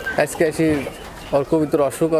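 Domestic pigeons cooing behind a man talking in Bengali.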